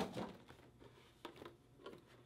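Faint handling noise of a cardboard retail box and its clear plastic packaging being opened, with a couple of soft knocks.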